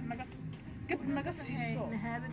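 A woman's voice talking in short, wavering phrases over a steady low hum, with a short click about a second in.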